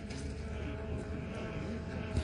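Faint steady hum of a drone flying overhead, over a low background rumble.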